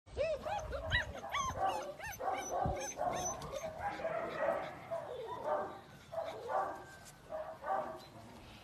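German shepherd puppies yipping and barking: a quick run of short, high, rising-and-falling calls in the first few seconds, then quieter, more broken calls.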